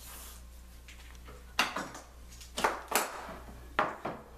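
Sharp knocks and clunks of a wooden rail being shifted and set back down against the workbench and metal doweling jig. There are four of them in the second half, about a second apart, over a steady low hum.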